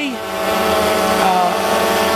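DJI Phantom 2 Vision Plus quadcopter hovering close overhead, its four propellers giving a steady, even multi-tone buzz.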